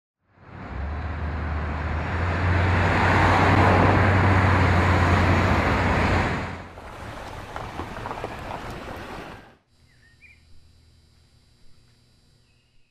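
Road and engine noise of a moving car heard from inside, a loud steady rush over a low drone, easing off about six and a half seconds in. It cuts off abruptly about nine and a half seconds in, leaving faint outdoor quiet with a couple of short chirps.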